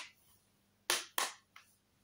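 Two short plastic clacks from a DVD case being handled, about a third of a second apart and about a second in.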